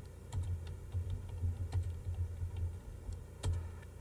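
Computer keyboard being typed on at an uneven pace, a string of light key clicks as a command is entered.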